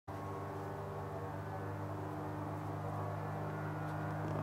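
Light aircraft's piston engine idling: a steady, even drone with a strong low hum and many overtones.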